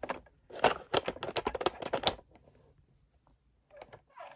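Plastic toy truck trailers clicking and clattering against each other as they are handled, a quick run of small clicks lasting about a second and a half.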